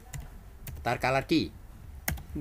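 Computer keyboard keystrokes: a few separate key clicks as a word is typed.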